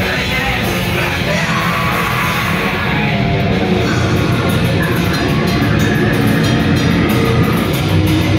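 A death metal or grindcore band playing live, with distorted guitars, bass and drums and harsh yelled vocals, recorded from within the crowd. The sound is loud and dense and never lets up.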